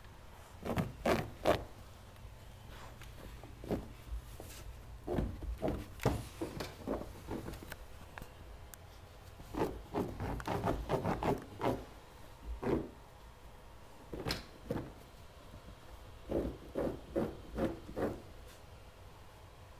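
A puppy's paws scratching and scuffing at a rug, as dogs do when digging to make a bed. The scratching comes in several quick bursts of a few strokes each, with short pauses between them.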